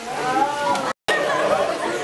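Many overlapping young voices chattering and shouting together, broken by a very short cut to silence about halfway through.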